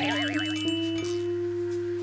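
Added comic sound effect: a wavering electronic tone that settles into one long, chime-like held tone, over a steady low hum.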